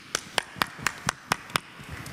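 Hands clapping, a few sharp, evenly spaced claps at about four a second, stopping shortly before the end.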